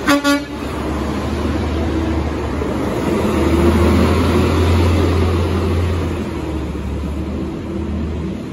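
Heil Half/Pack Freedom front-loading garbage truck giving two short toots of its horn, then its engine pulling away, growing louder for a few seconds and easing off as the truck drives off.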